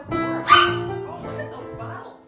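Piano music playing, with one short, loud, sharp sound about half a second in that stands out above the notes.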